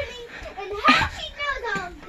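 A young child's voice speaking, the words not made out.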